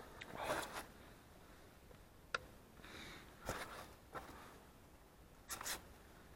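Close handling noise: a series of short rubbing and scraping sounds, with one sharp click a little over two seconds in.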